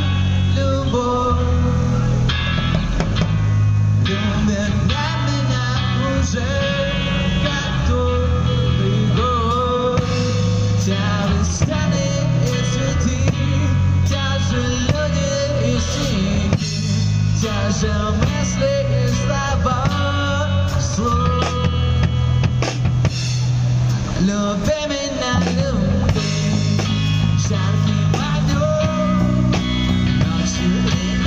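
Live rock band playing a song: electric guitar, bass guitar and drum kit keeping a steady beat, with a man singing the melody over it.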